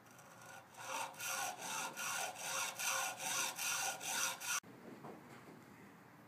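Hacksaw cutting through a carbon-fibre paddle shaft with quick, even back-and-forth strokes, about two and a half a second. The sawing stops abruptly about four and a half seconds in.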